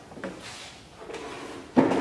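A chair being moved, with a few light knocks and some scraping, then a loud thump near the end as a person sits down on it.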